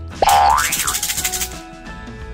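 Cartoon sound effect over background music: a sudden rising glide in pitch with a fast rattle, starting about a quarter second in and fading out over about a second.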